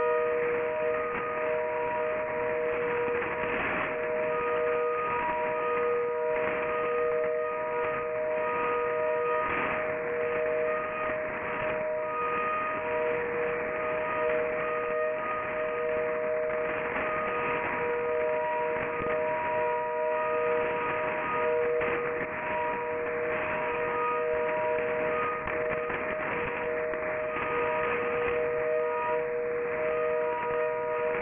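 HAARP transmissions on 2.8 and 3.3 MHz heard through AM shortwave receivers: two low tones held steady and unbroken, with fainter higher tones breaking in and out, over a bed of radio static.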